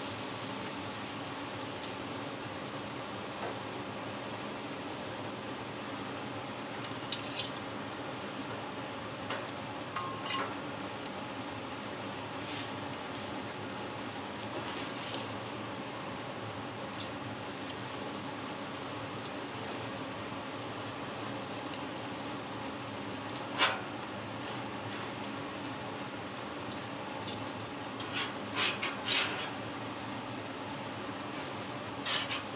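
Water sizzling on a hot griddle top, the hiss fading over the first half, as the plate is cleaned after cooking. Now and then a metal scraper scrapes and clinks against the plate, the loudest clink about two-thirds through and several more near the end.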